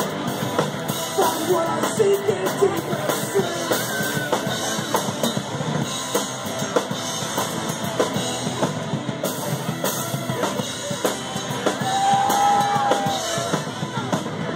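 Live rock band playing an instrumental passage: drum kit and electric guitars, with a long note held near the end.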